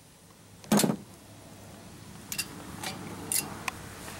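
Handling noise around the engine: a dull thump about a second in, then a few scattered light clicks.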